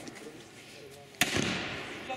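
A single black-powder revolver shot just after a second in, its report fading in a long echoing tail.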